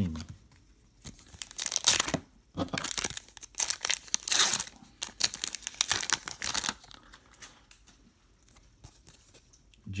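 A trading card pack's wrapper being torn open and crinkled by hand: a run of irregular ripping and crackling for about six seconds, loudest in two bursts early and midway. It then settles to faint handling.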